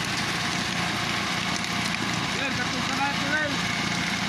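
Fishing boat's engine running steadily under a wash of noise, with voices talking partway through.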